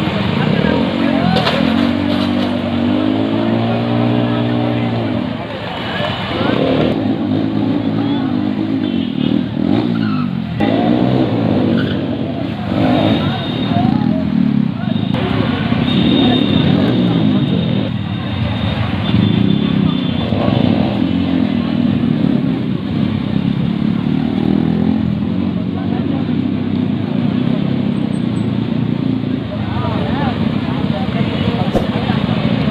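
Motorcycle engine revving up and down during stunt riding, with a long rev rising and falling a second or so in, over voices from a crowd.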